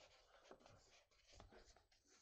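Very faint rustle of paper as hands handle the pages of a sketchbook, with a few soft ticks.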